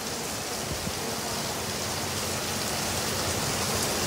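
Heavy rain pouring down onto wet paving, a steady hiss that grows slightly louder.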